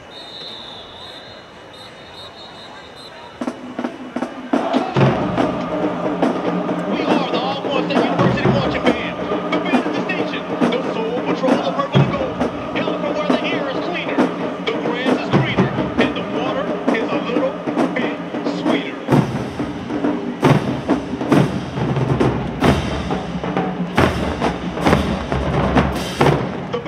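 A large marching band's brass section and drumline start playing a few seconds in: full held horn chords over a steady pattern of drum and bass drum hits.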